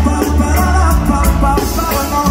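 Live reggae band playing loud in a large arena: heavy bass and drums under a singer's voice, heard from the crowd.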